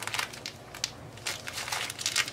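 Clear plastic bags of ground herbal powder crinkling and crackling as they are handled, a run of quick, irregular crackles.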